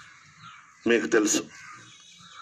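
A man's short burst of speech through a microphone, with faint harsh bird calls in the background.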